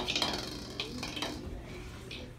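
Small ball rolling across a hardwood floor, with a few light knocks as it goes.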